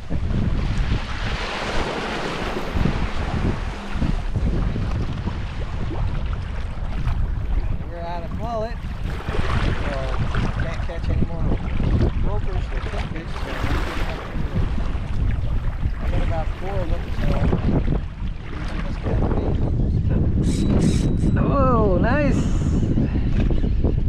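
Strong wind buffeting the microphone in heavy gusts, over choppy waves splashing around a plastic kayak's hull.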